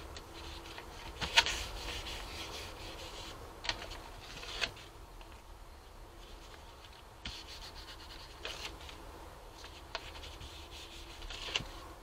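Paper rubbed by hand onto a rubbery gel printing plate, then peeled off and handled: faint scattered rustling with a few sharper paper crackles, the loudest about a second and a half in.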